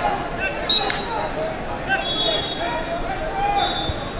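Short, shrill referee whistle blasts from the wrestling mats, three of them, the loudest coming with a sharp hit just under a second in, over the shouting of coaches and spectators in a large, echoing gym hall.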